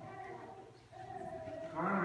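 Quiet, indistinct talking in a high voice, in two short stretches with a brief pause about halfway through.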